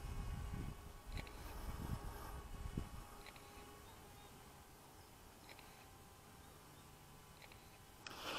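Near silence: a faint low rumble fades out about three seconds in, with a few faint short high sounds.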